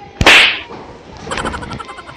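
A single sharp, very loud slap crack about a fifth of a second in, with a short hissing tail. About a second later comes a quieter rustle with a quick run of small clicks.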